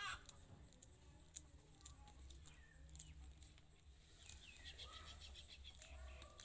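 Dried maize kernels being rubbed off the cob by hand, a faint, irregular scatter of small clicks as kernels break loose and drop onto the pile. A short animal call sounds right at the start and again about four seconds in.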